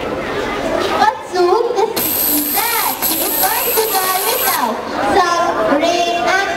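Children's voices talking and calling out, with a thin high whine for a couple of seconds in the middle.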